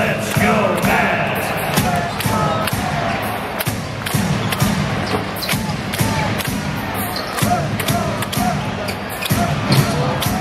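Basketball game heard from the arena stands: a ball dribbled on the hardwood court and sneakers squeaking in short chirps, over a steady hubbub of crowd chatter and arena music.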